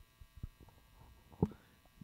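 Faint steady electrical hum on the commentary sound track, with two brief soft sounds about half a second and a second and a half in.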